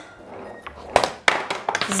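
Small wooden balls rolling and knocking in a portable tabletop skee-ball game: a low rolling rumble, then sharp wooden clacks about a second in and a quick cluster of them near the end.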